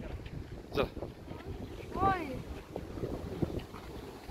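Wind buffeting the microphone, a steady low rumble, with a short spoken word about a second in and a rising-and-falling voice call about two seconds in.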